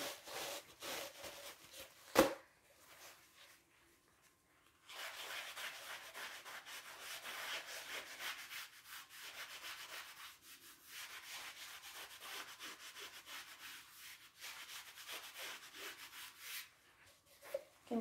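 A blue shop paper towel rubbing over a stretched painting canvas in quick scratchy strokes, blending in freshly applied paint. The rubbing starts about five seconds in and stops shortly before the end, after a single sharp click about two seconds in.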